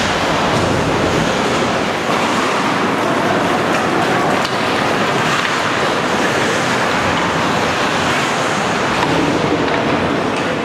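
Steady rushing noise of an ice hockey game in play in an indoor rink, with skates on the ice and the hall's echo, and no single sound standing out.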